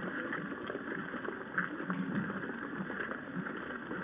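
Distant cannon salute: one muffled report about one and a half seconds in, over the steady background noise of an old outdoor recording.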